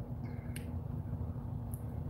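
Room tone: a steady low hum with a couple of faint short clicks, about half a second in and again near the end.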